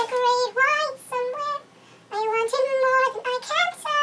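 A young woman singing unaccompanied in a high, thin voice, in short held phrases with a pause of about half a second near the middle.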